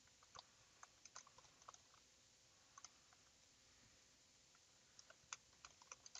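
Faint keystrokes on a computer keyboard: scattered clicks in short runs, with a pause of about two seconds in the middle.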